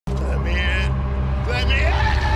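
A man yelling wordlessly: a short shout, then a scream that rises in pitch near the end and is held, over a steady low rumble.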